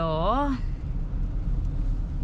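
Steady low rumble of a car driving on a wet road in heavy rain, heard from inside the cabin.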